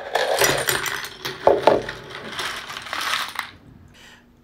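Metal screws poured from a box into a plastic bowl, a dense rattling clatter of many small clinks that stops about three and a half seconds in.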